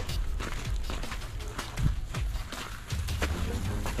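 Footsteps scuffing and crunching on gravelly sand while a corrugated plastic pipe is handled, with a couple of dull knocks about two seconds in, over background music.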